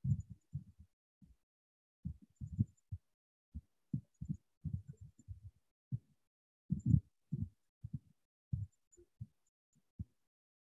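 Irregular, muffled low thumps, some close together and some spaced out, with a louder group about seven seconds in.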